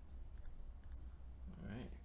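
A few light clicks of a computer mouse.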